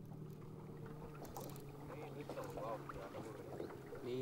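A small boat's motor running at a steady pitch, a low hum, with brief voices over it about two seconds in.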